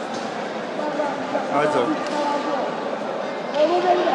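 Men's voices calling out over a steady background hubbub in a sports hall during a grappling bout, one stretch of talk about a second in and another starting near the end.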